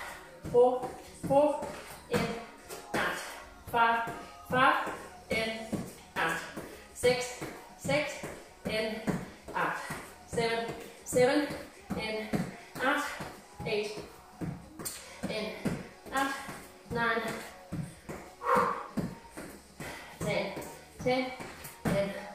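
A woman breathing hard with short voiced exhalations in a steady rhythm, about three every two seconds, under the exertion of a fast plank exercise.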